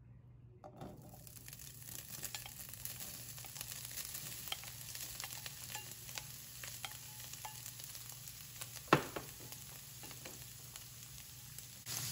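Diced boiled chicken breast starting to fry in hot olive oil in a nonstick frying pan: a quiet, steady sizzle with small crackling pops sets in about a second in as the pieces go into the oil. A single sharp knock sounds about nine seconds in.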